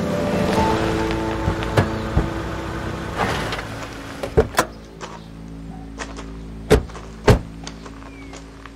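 Soft background music fades out, then a series of sharp thumps follows, car doors being shut, the two loudest close together near the end.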